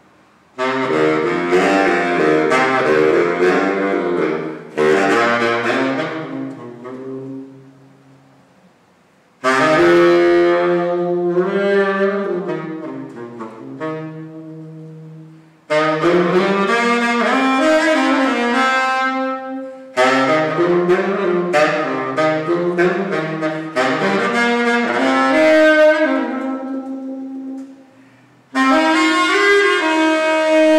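Unaccompanied baritone saxophone playing a slow solo line in phrases of a few seconds, each followed by a short breath pause, with some long held notes.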